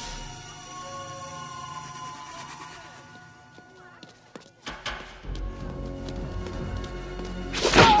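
Film soundtrack music with long held tones, fading out about halfway. Then comes a low rumble with scattered thuds of a fistfight, building to a loud burst of impacts and a shout near the end.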